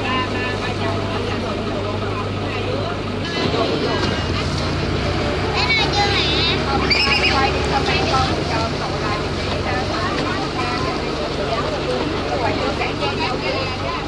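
Ferry boat engine running steadily as a low hum, its note shifting about three seconds in, with people talking over it.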